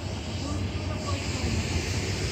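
Wind buffeting a phone microphone outdoors: an uneven low rumble under a broad hiss, with faint distant voices about half a second to a second in.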